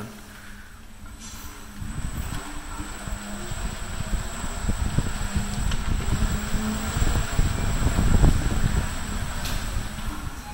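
Xiaomi Ninebot Mini self-balancing scooter riding along a hallway, heard as an uneven low rumble of rolling and wind buffeting on the handheld phone's microphone. It builds from about two seconds in and is loudest near the end, with a faint steady high whine underneath.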